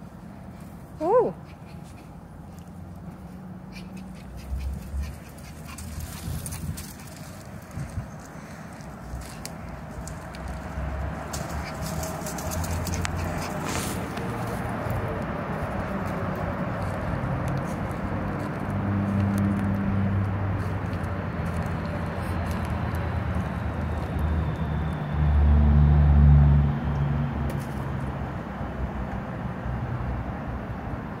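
A puppy gives one short rising yip about a second in. A low rumble then builds and swells loudest for a couple of seconds near the end.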